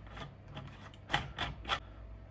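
Plastic screw cap being turned onto a 1.5-litre plastic bottle of fertiliser solution: a few short rubbing clicks from the cap threads.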